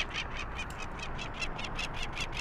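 Peregrine falcon giving its alarm call, a rapid harsh cacking of about eight or nine notes a second, from an adult defending its nest site against intruders. A low steady wind rumble lies underneath.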